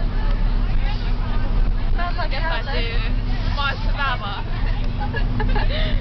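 Bus engine and road noise droning steadily inside the passenger cabin, under girls' chatter and laughter.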